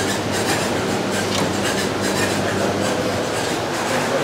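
A commercial ice cream machine's motor running steadily: a low hum under an even whirring rush, with light regular ticking.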